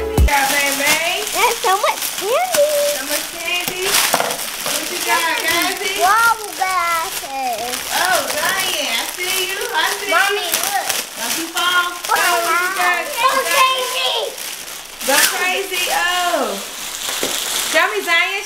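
Young children's high-pitched voices chattering and exclaiming over the crinkling and tearing of clear cellophane wrap pulled off gift baskets.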